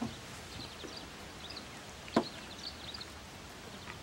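Quiet outdoor ambience with faint, scattered high chirps of small birds, and one sharp click about two seconds in.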